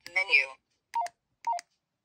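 Baofeng UV-5R handheld transceiver's synthetic voice prompt saying a short word, then two short keypad beeps about half a second apart as menu number 25 is keyed in. Each beep is a quick two-note tone that steps down in pitch.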